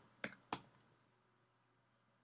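Two light keystrokes on a computer keyboard, about a quarter of a second apart, near the start.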